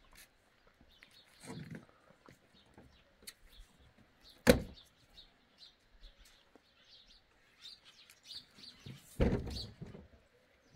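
Small birds chirping in short repeated calls, with one sharp knock about halfway through and a dull thud near the end.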